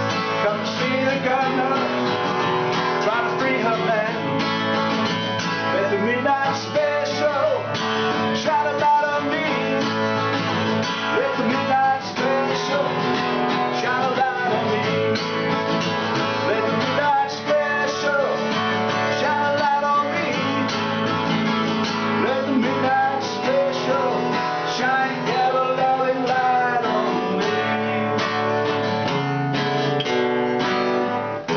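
Acoustic guitar played solo as an instrumental break in a folk-blues song: strummed chords with picked notes, some of them bending in pitch.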